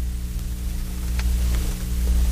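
Quiet low background music: a few sustained low tones held steady, with a couple of faint ticks in the middle.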